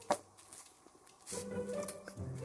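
A single light click of the plastic model hull being handled just after the start, then near silence, then a faint steady low hum with a fixed pitch from a little past the middle.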